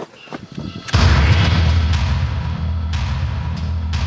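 A sudden deep cinematic boom about a second in, opening into loud, dramatic film-score music carried by a heavy low drone.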